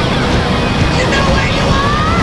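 Sportbike at speed: steady, loud wind rush over the camera microphone with the engine running underneath.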